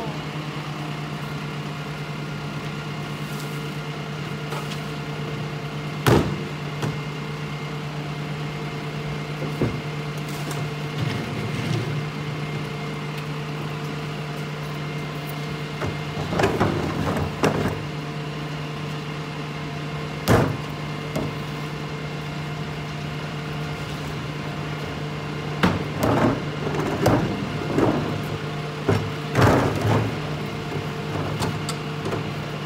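Rear-loader garbage truck idling with a steady low hum. Sharp knocks and bursts of plastic clatter from wheeled trash carts and bags being handled at the hopper come about 6 seconds in, around 16 seconds, about 20 seconds in, and repeatedly near the end.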